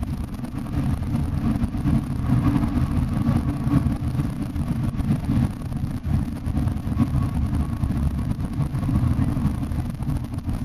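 Long-distance coach running at highway speed, heard from inside the passenger cabin: a steady low rumble of engine and road noise.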